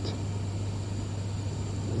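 Steady background hum and hiss of an old interview recording during a pause in speech, with a faint high whine.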